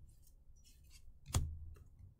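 Pokémon trading cards being flipped through by hand: faint sliding rustles of card against card, then one sharp click about a second and a half in.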